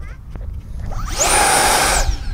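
The 50 mm electric ducted fan of an Arrows RC L-39 Albatros on 4S power spools up about a second in, its whine rising quickly. It then runs at high power with a loud rush and a steady high-pitched whine for a hand launch.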